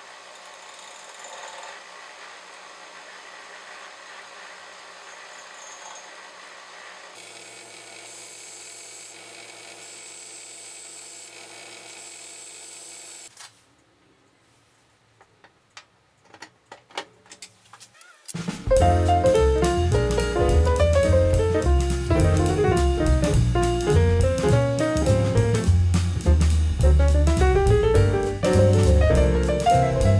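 A bench grinder running steadily, with its sound changing about seven seconds in as a steel rod is worked against the wheel. It stops about thirteen seconds in, followed by a few light metal clicks. About eighteen seconds in, loud piano music with a drum beat starts and carries on.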